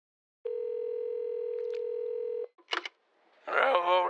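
Telephone ringback tone heard down the line by the caller: one steady ring lasting about two seconds, then two short clicks as the call is answered.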